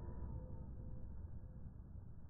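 Tail end of a firework going off: a few faint tones die away within the first second or so, leaving a low rumble.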